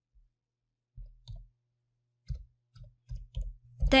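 Computer keyboard keystrokes: irregular, scattered taps beginning about a second in, each with a dull thud, as code is typed.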